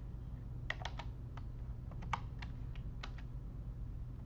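Typing on a computer keyboard: about ten separate, irregularly spaced key clicks over a steady low hum.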